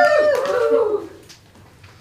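A high, drawn-out "woo" cheer from a woman's voice, falling in pitch as it ends about a second in, then quiet room tone.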